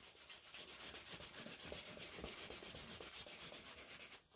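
Wooden burnishing slicker rubbed quickly back and forth along the dampened edge of a raw leather sheath: faint, fast rubbing strokes, friction burnishing that brings up a shine on the edge.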